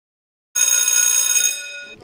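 A bell-like chime struck once about half a second in, ringing with many steady tones and fading away over about a second and a half.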